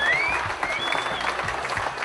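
Crowd applauding, a dense patter of clapping, with a few short high-pitched tones over it near the start and about a second in.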